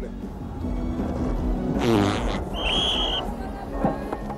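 A loud, raspy fart about two seconds in, lasting about half a second, followed almost at once by a short, steady referee's whistle blast. Music plays underneath.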